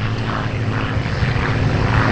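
P-51 Mustang's Merlin V-12 engine and propeller on a low, fast pass, a steady drone growing louder toward the end.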